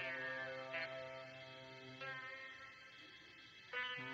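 Devotional song: a man's sung melody gliding over steady, sustained backing chords, sung close into a karaoke microphone. The music drops quieter about two seconds in and swells back just before the end.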